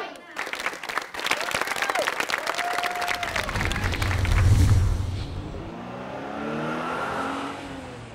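Studio audience applauding for the first few seconds, then a deep low rumble, and a car engine revving up with rising pitch near the end.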